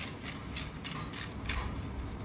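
Hands turning and rubbing a carbon telescopic fishing rod, with a series of light clicks and scrapes from the rod being handled.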